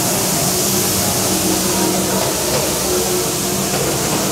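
A steady low hum with a constant hiss over it, unchanging throughout.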